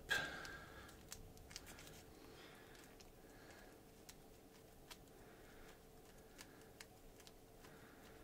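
Near silence with a few faint, scattered small clicks and ticks as gloved fingers press epoxy putty onto a small diecast metal car body, over a faint steady hum.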